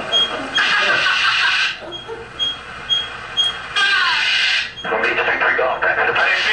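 Speech from an in-cockpit aerobatic flight video playing through the room's speakers, with a radio-like sound. A short high beep repeats about twice a second through the first half.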